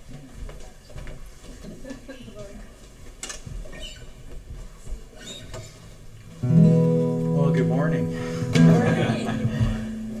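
Acoustic guitar strummed, coming in suddenly about six seconds in with a ringing chord that changes to another chord about two seconds later. Before that, quiet room noise with faint murmuring voices and small knocks.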